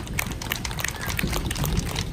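Audience applause: a dense, steady patter of many hands clapping at the end of a dance performance.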